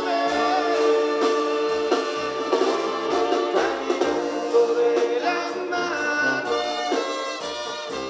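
Live Mexican banda sinaloense music: a brass section of trumpets and trombones playing over a sousaphone bass line.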